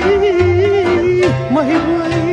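Romanian folk party music: a lead melody with vibrato and quick ornamental turns over a bass accompaniment that moves in regular steps.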